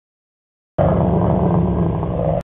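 Wolf growling, loud and rough, starting about three-quarters of a second in and cutting off suddenly about a second and a half later.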